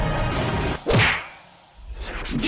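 Intro music breaks off into a single sharp whoosh sound effect about a second in. The whoosh sweeps down in pitch and fades to a brief lull.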